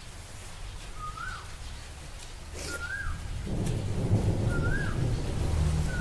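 A bird calling a short whistled note that rises and then falls, four times at an even pace of about one every two seconds. A low rumble swells in underneath from about halfway through.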